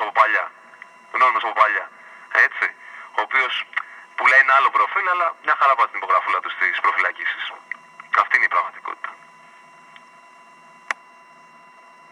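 Speech heard over a telephone line until about nine seconds in, then a pause filled with the line's faint steady tone and a single sharp click.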